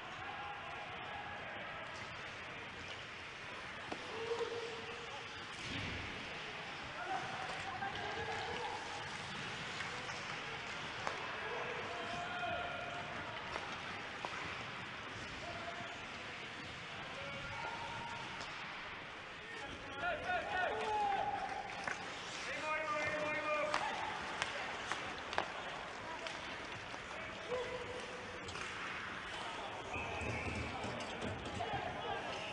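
Ice hockey TV broadcast audio: a commentator talking over the game, with a few sharp clacks of stick and puck against the ice and boards. The voice becomes more animated a little after two-thirds of the way through.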